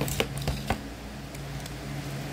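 A few short crackles and clicks, close together in the first second, then softer rustling, as a chocolate bonbon in its paper cup liner is picked out of a clear plastic box.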